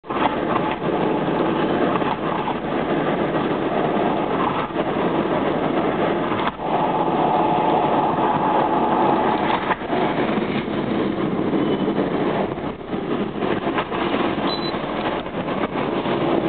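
Interior noise of a Honda Insight hybrid (first generation, five-speed manual) cruising at expressway speed. It is a loud, steady mix of tyre, wind and engine noise heard inside the cabin.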